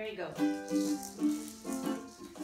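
Live music for a dance: a small string instrument like a ukulele played with shaken rattles, and voices carrying the tune in held notes.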